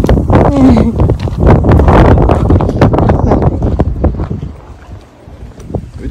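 Wind buffeting the microphone in loud, irregular gusts, which ease off about four and a half seconds in.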